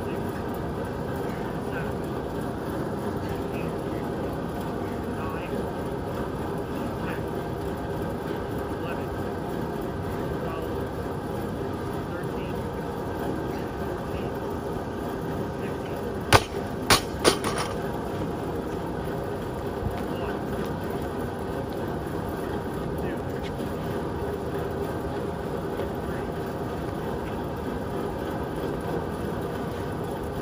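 Steady rushing noise of a large drum fan running, with a loaded barbell with bumper plates dropped onto rubber mats about sixteen seconds in: one loud impact followed by two smaller bounces within about a second.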